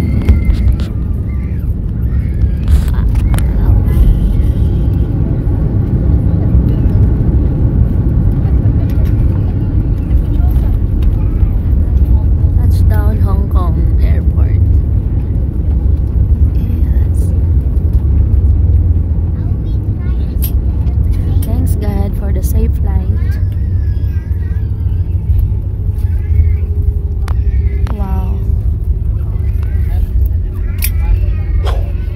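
Inside the cabin of a jet airliner rolling along the runway just after landing: a loud, steady low rumble, with faint voices over it.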